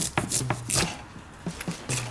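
A kitchen knife chopping on a cutting board: a series of sharp, irregularly spaced knocks as fruit is cut.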